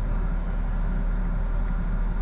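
Steady low rumble of a coach's running engine and air conditioning, heard from inside the passenger cabin.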